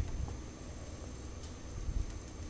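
Wind buffeting the microphone as a low, uneven rumble over a faint steady hiss, with a brief low thump near the end.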